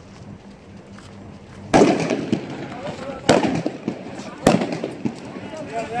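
Three loud, sharp blasts about a second or so apart, each followed by a short echo, heard during a street clash.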